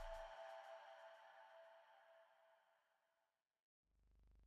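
The ringing tail of a channel's logo sting: a few held tones fade steadily away and are gone about three seconds in.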